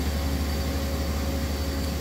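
Steady low machine hum with an even hiss over it: the constant background drone of a powered-up CNC machine and shop.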